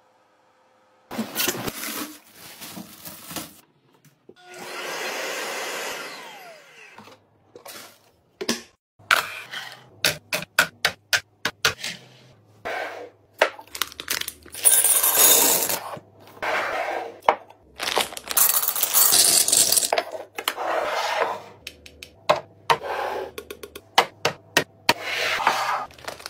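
Containers and packaging being handled: a quick series of clicks, knocks and rustles, with a longer smooth whooshing noise about four seconds in.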